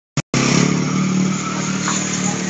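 A motor vehicle's engine running steadily, a low hum that eases slightly, after a brief blip at the very start.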